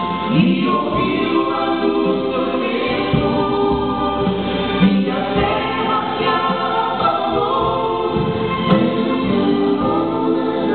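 Gospel song sung by a trio of two men and a woman into microphones, the voices together in harmony without a break.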